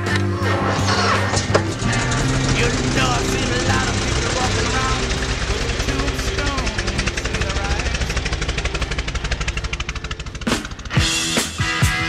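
A Harley-Davidson motorcycle's V-twin engine running with a rapid, even pulsing beat, mixed with rock music. Near the end the pulsing breaks off into a few sharp hits.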